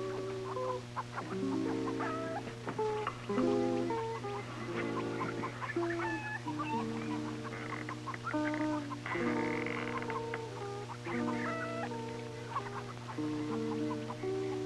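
Background music score: a slow melody of held notes over sustained chords that change every second or so, with a steady low hum underneath.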